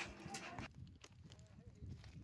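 Faint background noise, close to silence, with a few soft ticks.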